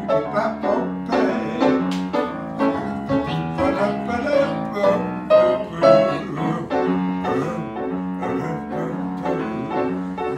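Solo piano playing an instrumental break in a blues song, with a steady rhythmic beat and no singing.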